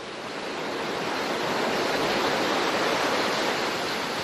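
Ocean surf: waves breaking on a beach, a steady rushing wash that swells up over the first second and then holds.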